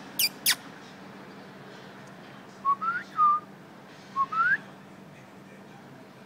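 Person whistling to puppies: two very quick, sharp falling squeaks at the start, then two bursts of short rising whistle notes, the first also dipping back down, a second or so apart, the kind used to catch a pup's attention.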